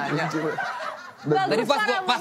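A man talking with light laughter and chuckling from others, a brief lull in the talk just after a second in.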